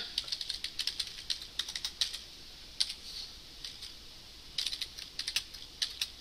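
Typing on a computer keyboard: a quick run of keystrokes, a few scattered ones in the middle, then another quick run near the end.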